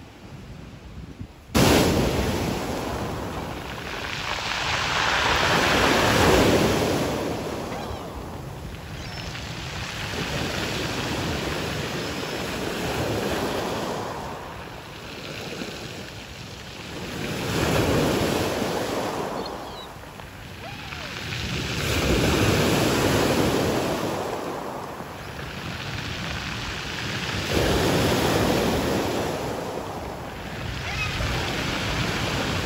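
Sea waves breaking and washing up a pebble beach, swelling and fading about every five seconds; the sound starts abruptly about a second and a half in.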